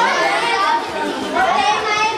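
Many children's and teenagers' voices chattering and calling over one another at once, a busy group talking.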